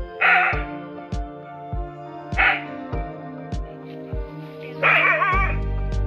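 A dog barking three times, about two seconds apart, the last bark longer and wavering, up at a monitor lizard it has chased up a coconut palm. Background music with a steady thumping beat plays under the barks.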